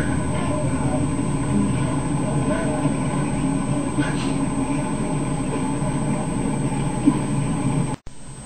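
Indistinct voices talking in a room over a steady low hum.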